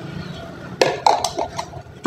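A stainless steel cooking pot full of water being handled on a tiled floor: a few short metallic clinks and knocks about a second in, as its handles are taken hold of.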